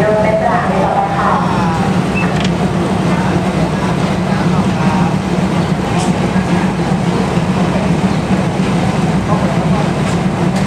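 A diesel train's engine running with a steady low hum while at a station platform, with people's voices faint in the background.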